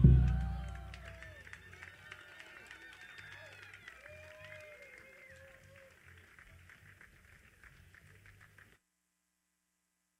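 A last low bass note from the stage sound system rings out and dies away over about a second, leaving scattered audience clapping and whoops that fade slowly. The sound cuts off suddenly near the end.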